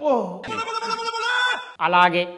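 A man's drawn-out, exaggerated vocal sound: a falling cry that settles into a held, steady note for about a second, then breaks off shortly before a new burst of voice near the end.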